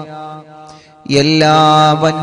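A man's voice chanting a repentance supplication in long, drawn-out held notes. The chanting pauses for about a second, then comes back in on a sustained note.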